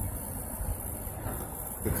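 Steady road and engine noise heard inside the cabin of a car moving at highway speed, a low even hum without distinct events. A man's voice starts just before the end.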